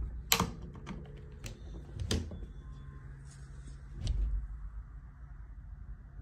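A few sharp clicks and taps, roughly half a second apart, then a duller thump about four seconds in, over quiet room tone.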